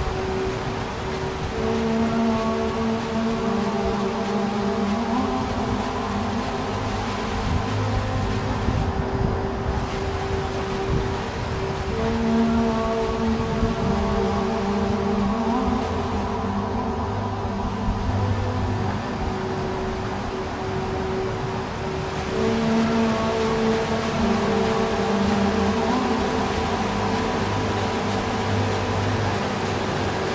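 Ambient drone music: slow, held chords that cycle in a loop about every ten seconds, under a thick, steady wash of noise.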